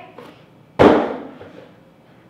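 An empty cardboard shipping carton landing after being tossed aside: one loud, sharp thump a little under a second in, fading over about half a second.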